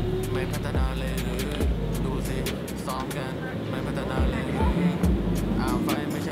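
Background music with a deep, thudding bass beat.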